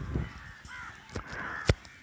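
A bird calling faintly in the background during a pause, with two short clicks in the second half.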